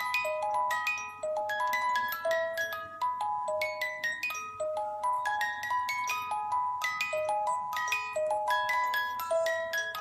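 Music box mechanism playing its tune: a steady run of high, bell-like plucked notes, each ringing out and fading as the next one sounds.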